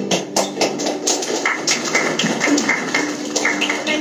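Acoustic guitars being handled: irregular light taps and knocks, with low voices underneath.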